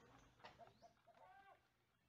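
Near silence, with a few faint bird calls in the background during the first second and a half.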